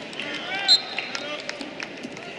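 Wrestling shoes squeaking on the rubber mat as the wrestlers shift their feet in a tie-up, with one loud, short, high squeak about three-quarters of a second in, over arena voices.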